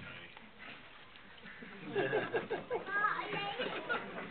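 Indistinct voices of several people talking quietly away from the microphone, picking up about halfway through.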